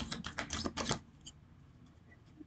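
A tarot deck being shuffled by hand: a quick run of card flicks and clicks that stops about a second in.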